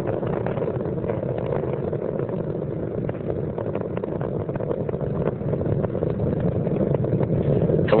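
Space Shuttle Columbia's solid rocket boosters and three main engines firing during ascent, with the main engines throttled back through the sound barrier: a steady, low rocket rumble with a faint crackle.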